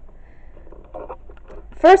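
A quiet room with a few faint, soft clicks and rustles, then a woman's voice starts near the end.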